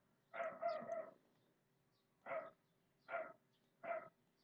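An animal calling, one longer call less than a second in, then three short calls in the second half.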